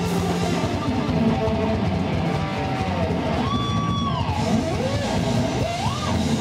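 A live rock trio plays an instrumental passage on electric guitar, bass and drums, with no vocals. A Stratocaster-style lead guitar holds a high note about halfway through, then slides it down, and bends another note up near the end.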